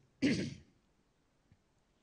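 A man clearing his throat once, briefly, into a microphone, followed by near silence.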